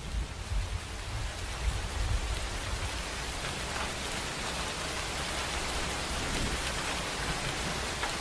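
Steady rain, an even hiss, with a low rumble in the first couple of seconds.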